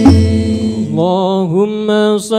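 Group sholawat singing with percussion ends in a last stroke and a fading held note. About a second in, a single male voice begins chanting alone, unaccompanied, its pitch bending and ornamented.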